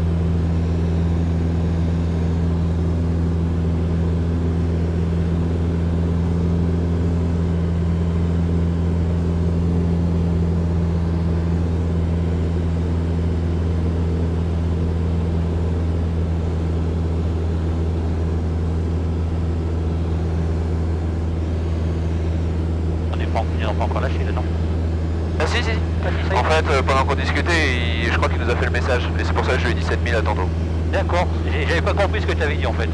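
Robin DR400 light aircraft's piston engine and propeller running steadily in flight, heard from inside the cockpit as an even, low drone. Voices come in over it near the end.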